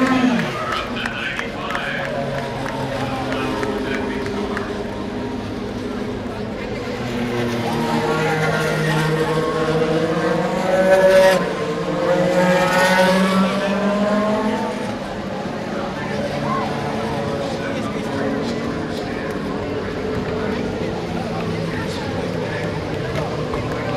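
Indy cars' engines on the track, several overlapping engine notes whose pitch rises and falls as the cars pass, loudest about halfway through.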